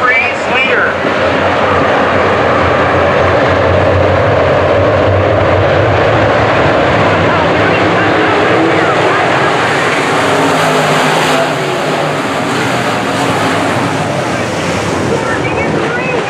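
A pack of IMCA Modified dirt-track race cars running together, their V8 engines making a loud, steady drone that holds throughout.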